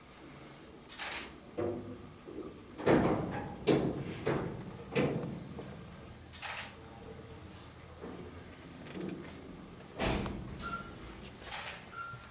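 A series of irregular knocks and clunks, about nine of them, loudest from three to five seconds in and again about ten seconds in.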